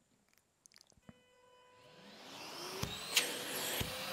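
Festool CTC SYS cordless dust extractor switched on from its Bluetooth remote on the hose: after a faint click about a second in, its 36-volt suction turbine spins up from about two seconds in with a rising whine and airflow, growing louder to the end.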